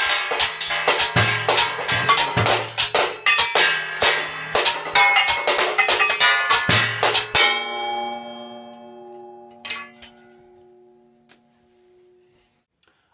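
A junk-percussion drum kit made of fruitcake tins and other found metal objects, played with sticks in a fast, busy jazz-style groove with low thuds under the clattering tin strikes. The playing stops suddenly about seven and a half seconds in. A struck metal piece then rings on in a few steady tones that slowly fade, with a couple of light taps.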